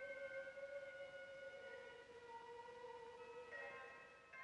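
Faint film-score music: several sustained high notes held steadily, one drifting slightly in pitch, with new notes entering near the end as the sound slowly fades.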